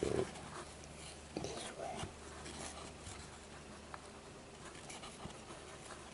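Cord rustling and sliding against itself as it is worked through a Turk's head knot by hand. A short voice-like sound comes at the very start and another about a second and a half in.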